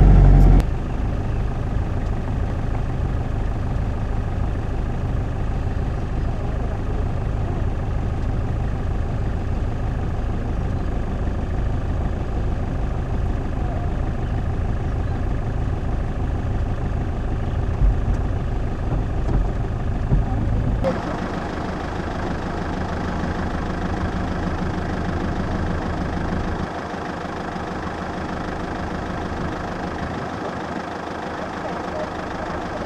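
A vehicle engine idling steadily, a low even rumble. About 21 seconds in, the sound changes abruptly and the lowest part of the rumble becomes weaker.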